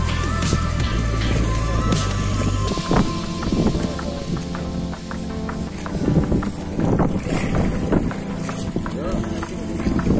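Background music with held chords, a bass line that changes every second or so and a light beat, over wind on the microphone and the noise of a small boat at sea.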